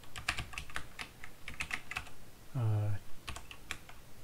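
Typing on a computer keyboard: a quick run of keystrokes, a short break just past the middle, then a few more keys near the end.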